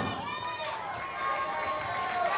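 Several voices calling out and talking over one another, with no music playing.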